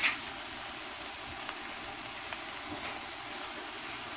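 Chopped shrimp, imitation crab and vegetables frying in a sauté pan, a steady sizzle, with a brief louder burst right at the start as the cabbage goes in.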